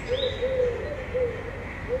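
Eurasian collared dove cooing, a full three-note phrase of short, long, short notes, with the next phrase starting near the end. A small bird gives one short chirp just after the start.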